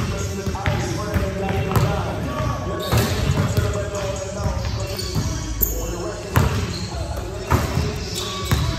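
Basketball bouncing on a hardwood gym floor: several sharp, separate bounces, with voices and music underneath.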